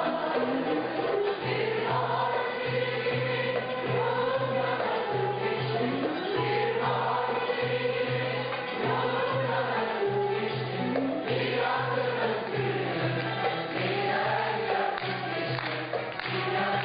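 A woman singing a Turkish classical song in a long, wavering, ornamented melody, backed by a choir and an instrumental ensemble, over a low beat pulsing about twice a second.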